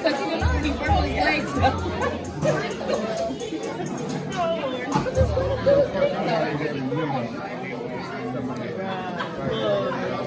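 Many voices of children and adults chattering at once in a large hall, with music playing underneath.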